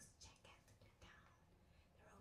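Faint whispering: soft, breathy hisses of voice in near silence, mostly in the first half-second.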